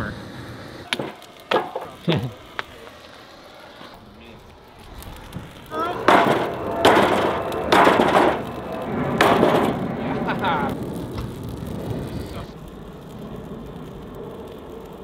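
Hammer blows on a steel suspension part whose rubber bushings are on fire, knocking the burnt bushings loose. A few sharp knocks come in the first couple of seconds, then a run of louder, ringing whacks between about six and nine seconds in, with the flames burning underneath.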